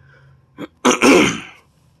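A person coughs once, loudly and abruptly, about a second in, after a brief shorter sound just before it.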